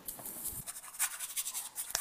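Stiff bristle brush scrubbing oil paint onto a stretched canvas in a run of short, scratchy strokes.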